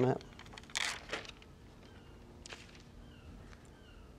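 Faint rustling and crinkling of the paper backing sheet from iron-on fusible web as it is handled, in a few short rustles about a second in and again past the middle.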